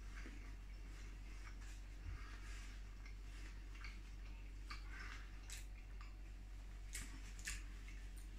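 Faint chewing of a mouthful of chilli dog: soft wet mouth clicks and squelches, with a few sharper clicks in the second half.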